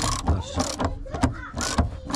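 A 19 mm socket wrench on an extension undoing a spare-wheel carrier bolt, with a quick, irregular run of metallic clicks. The old bolt turns very easily: it is not seized.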